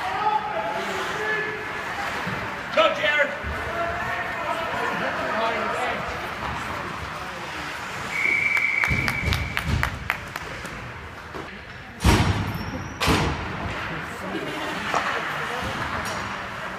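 Ice hockey play in an echoing indoor rink: voices and shouts, sharp stick clacks, and two loud bangs against the boards about twelve and thirteen seconds in, the first the loudest. A short, steady high tone sounds about eight seconds in.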